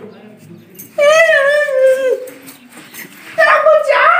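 A person's high-pitched, drawn-out whimpering wail, about a second long, sinking at its end. Another cry or voice starts near the end.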